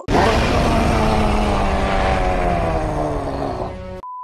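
A giant beast's roar as an anime sound effect: one long, rough roar that starts suddenly, slowly falls in pitch and fades near the end.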